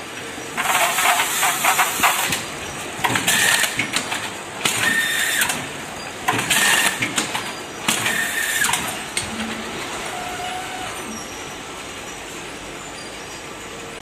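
Machinery of an automatic bucket weigh-filling, capping and carton-packing line running. It gives five bursts of hiss, each about a second long, over a steady background hum. After about nine seconds only the hum is left.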